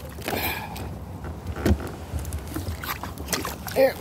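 Plastic sea kayak being worked over a submerged log in shallow water: paddle splashes with scattered knocks and scrapes of the hull, a sharp knock about halfway through the loudest.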